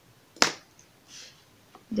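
A single sharp click about half a second in, then a brief soft rustle, from a hand moving a sheet of graph paper over the pages of a textbook.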